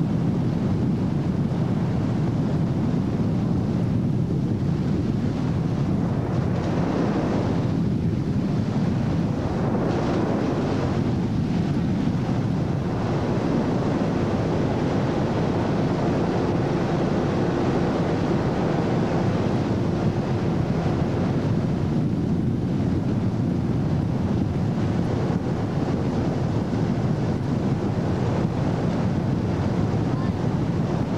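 Ski boat running steadily at towing speed: engine noise mixed with rushing water and wind buffeting the microphone, with a faint steady hum in the middle stretch.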